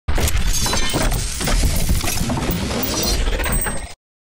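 Channel logo intro sound effect: a loud, dense run of crashing, shattering impacts over a deep bass rumble, cutting off suddenly just before the end.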